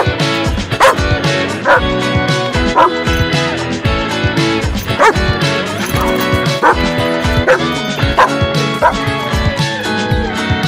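A pop song's backing track with dog barks and yips laid over it, a short sharp yip roughly every second.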